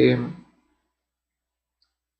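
A man's drawn-out hesitation 'eh' trailing off in the first half second, then dead silence.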